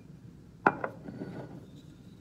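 A sharp click a little over half a second in and a fainter one just after, then faint rubbing: a bottle opener catching on the metal cap of a glass soda bottle, a cap that turns out to be a twist-off.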